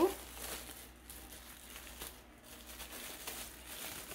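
Thin plastic wrapping crinkling as it is handled and pulled off a doll, quiet and continuous.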